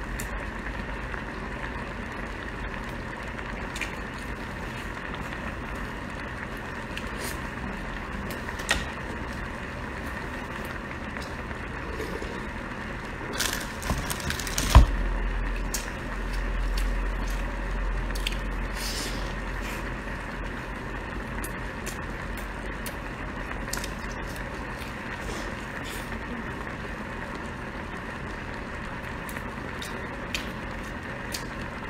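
A person chewing a large meat-stuffed flatbread, with small wet mouth clicks over a steady background hiss and hum. A cluster of louder clicks and one sharp knock come about halfway through, followed by a few seconds of low rumble.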